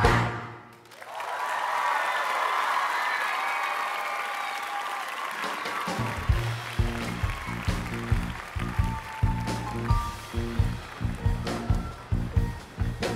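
A choir's final chord cuts off right at the start, and an audience applauds and cheers for about five seconds. About six seconds in, instrumental music with a steady low beat starts up.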